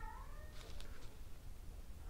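A domestic cat meowing faintly: one short call right at the start.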